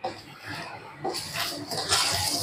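Rustling of georgette saree fabric as it is spread and turned over by hand, growing louder towards the end.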